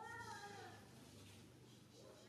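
Faint call of a macaque: one short, arched cry that rises and falls in pitch over about half a second at the start, like a young monkey's coo.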